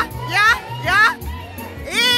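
Live band music with a steady bass line under a run of quick rising pitched swoops, about two a second.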